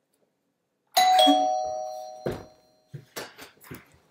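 Doorbell chime: two notes struck in quick succession, ringing and fading over about a second and a half. A sharp click and a few soft thuds follow.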